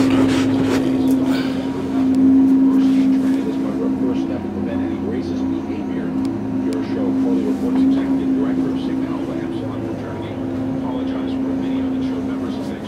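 A steady mechanical hum of even pitch runs throughout, with a few faint clicks and knocks over it.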